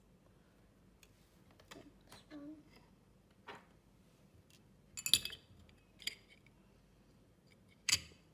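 Light metallic clicks and clinks from handling the hard disk drive's parts as a disk platter is set back onto the spindle hub. The loudest is a clink with a brief ring about five seconds in, and a sharp click comes at the very end.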